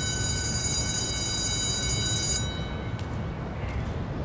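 Electric school bell ringing: a steady, metallic ring that stops abruptly about two and a half seconds in, with its last tones dying away half a second later.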